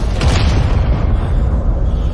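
Deep rumble of a large explosion. The higher crackle thins out within the first half second while the low rumble holds on.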